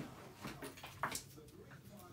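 A few faint clicks and knocks of handling on a workbench, the clearest about a second in, over quiet room tone.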